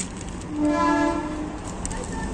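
A vehicle horn sounds once, a steady blare lasting a little over a second, over a constant background noise.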